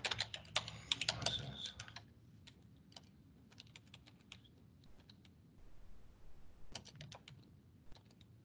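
Typing on a computer keyboard: a quick run of keystrokes in the first two seconds, then scattered single keys and a short burst of typing near the end.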